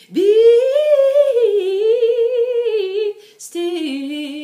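Solo female soprano singing a cappella: one long wordless note that scoops up at the start and is held with vibrato for about three seconds. After a brief gap, a lower phrase begins near the end.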